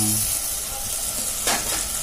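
Tamarind fish gravy sizzling and bubbling in a clay pot, a steady hiss, with one short sharp knock about one and a half seconds in.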